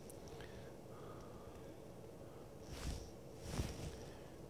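Faint, even background noise, with two soft, brief rushes of noise near the end.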